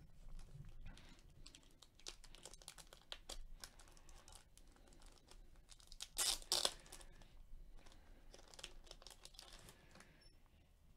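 Plastic wrapper on a pack of trading cards crinkling as gloved hands work it open. There are many faint crackles throughout, with two sharper tearing rips about six and a half seconds in.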